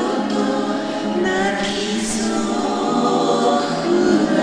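Music: a voice singing a slow ballad in long held notes, with acoustic guitar accompaniment.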